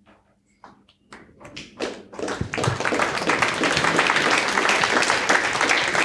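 Audience applauding: a few scattered claps begin about half a second in, then build into full, steady applause from about two seconds in.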